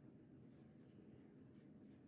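Near silence: faint scratching of a metal crochet hook pulling 100% cotton yarn through stitches, with a few tiny clicks over a low room hum.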